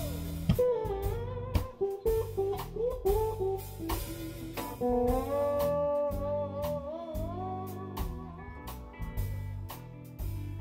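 Electric guitar soloing in a live blues band, the lead line full of bent notes that slide up and down in pitch, over a drum kit and low notes underneath.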